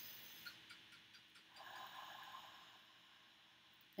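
Near silence, with a couple of faint ticks and one soft breath drawn in, lasting about a second, around the middle.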